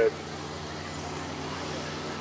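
Low, steady outdoor street background noise: the hiss and hum of road traffic, with no distinct event.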